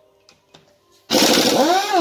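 Pneumatic impact wrench on a bolt of an engine cylinder head, starting suddenly about halfway in and running in a loud burst, its pitch rising and then beginning to fall.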